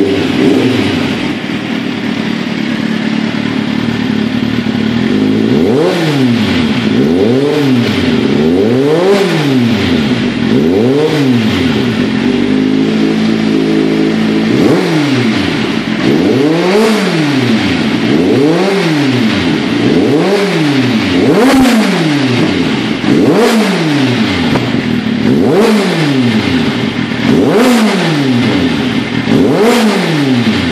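Kawasaki Z750's inline-four engine through a LeoVince SBK aftermarket exhaust, idling at first and then blipped repeatedly. Each blip rises and falls back in pitch, about every one and a half seconds, with a short spell of idle in the middle. Sharp pops and crackles sound from the exhaust as the revs drop.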